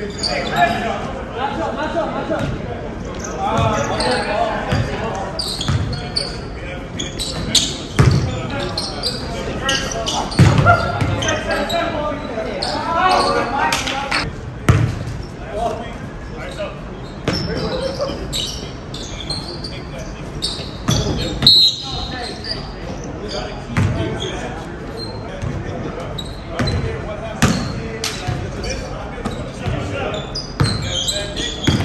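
A basketball bouncing on a gym floor during a game, a string of irregular thuds, with players' voices calling out. All of it echoes in a large hall.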